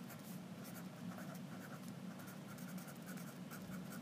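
Faint scratching of a felt-tip pen on a paper worksheet as words are written out in short, irregular strokes.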